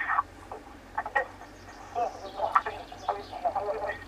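A woman's voice over a phone's speaker, very muffled and garbled so that the words can't be made out: a bad phone line.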